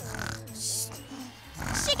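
An elderly cartoon woman snoring as she nods off over her work: drawn-out snores in the first second, with a hushing 'shh' and light background music.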